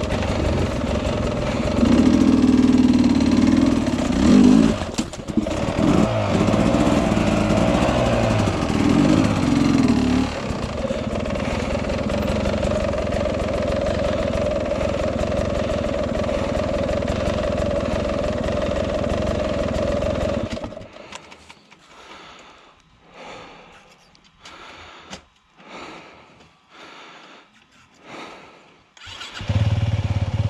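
Off-road dirt bike engines on a rocky climb, revving unevenly for the first ten seconds and then running steadily. About twenty seconds in the engine sound stops and only faint scattered knocks and scuffs are heard. An engine comes back in loudly just before the end.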